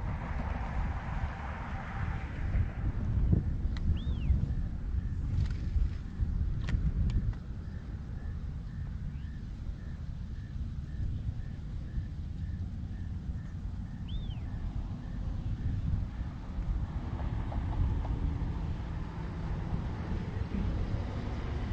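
Outdoor ambience dominated by wind rumbling on the microphone, rising and falling in gusts, with a short bird call about four seconds in and another near fourteen seconds.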